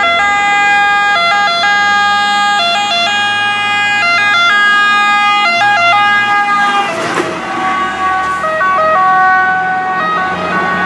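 Italian fire brigade (Vigili del Fuoco) Iveco fire engine approaching and passing with its two-tone siren sounding. It holds the high note with short dips to the lower one. A rush of engine and tyre noise comes as it goes by about seven seconds in, after which the siren sounds lower in pitch as it drives away.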